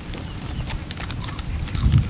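Low, uneven rumble of wind buffeting the microphone, with a few faint clicks.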